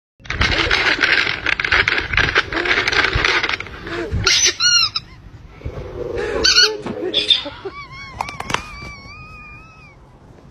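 Crinkling of a plastic snack packet, dense and crackly for the first three and a half seconds. After that come a few short, high squeaky pitched sounds, ending in one long held, slightly wavering note.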